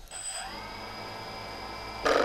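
DJI Phantom 2 Vision quadcopter's four brushless motors starting up with the aircraft on the ground: a brief high tone, then a whine that rises in pitch for about half a second and settles into a steady, quiet idle hum of the spinning propellers.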